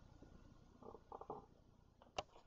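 Near silence: a faint low rumble, with a few faint short sounds about a second in.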